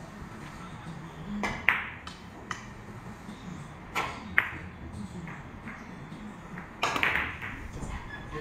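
Ivory-hard carom billiard balls clicking against one another and the cue tip striking the cue ball: a handful of sharp clicks, the sharpest about one and a half seconds in and just after four seconds, with a quick run of clicks near the end as the scoring shot plays out.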